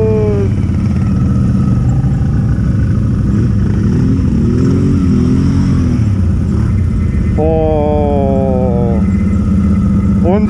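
Quad bike engine running steadily at low revs, close to the microphone, with a short rise and fall in engine pitch about four to five seconds in.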